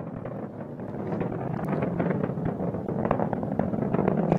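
Atlas V N22 rocket in flight near maximum dynamic pressure: a steady, dense rushing noise with crackle from its RD-180 main engine and solid rocket boosters.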